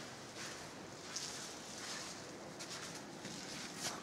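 Quiet, soft footsteps scuffing on a stone floor, about one step a second, over a steady hiss of room tone in a stone church.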